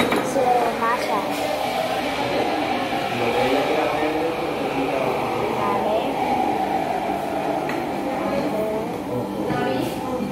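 Indistinct overlapping voices of diners chattering in a busy café.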